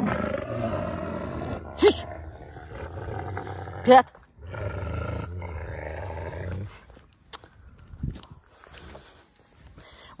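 Two wolves growling at each other in a squabble over jealousy, in two long, low stretches with a couple of short sharp sounds between them. The growling dies down about seven seconds in.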